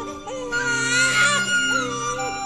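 A newborn baby crying briefly, from about half a second in to about a second and a half, over soft flute music. This is a newborn's first cry, signalling the birth.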